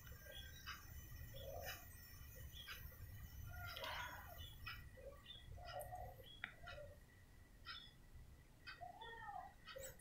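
Near silence: faint room tone with a few faint, short, scattered calls and ticks in the background.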